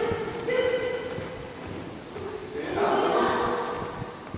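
Children's voices calling out together in two long, drawn-out calls, one shortly after the start and one near the end, in a large echoing gym.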